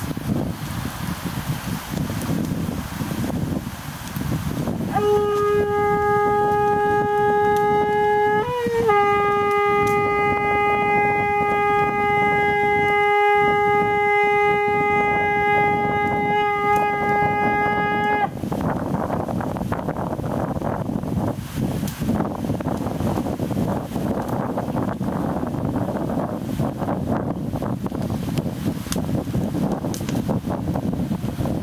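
Conch shell trumpet (shankha) blown in one long, steady note, starting about five seconds in, wavering briefly about three seconds later, then held for roughly ten seconds more before it stops. Wind rumbles on the microphone before and after the note.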